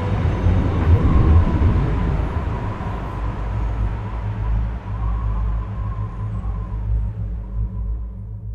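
Low, steady rumbling drone that closes the track, with a faint held tone and hiss above it that slowly fade away over the last few seconds.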